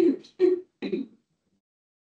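A woman speaking Ukrainian over a video-call connection, finishing a phrase about a second in. Then comes dead silence, with no room sound at all.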